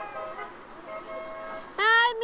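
A car horn honks loudly near the end, over faint distant voices.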